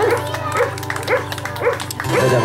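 A dog barking repeatedly, about two barks a second, over steady live guitar-band music.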